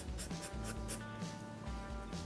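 About four quick marker strokes scratching on drawing paper in the first second, over background music with sustained notes.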